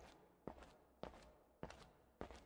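Faint footsteps, three soft, evenly spaced steps at a walking pace.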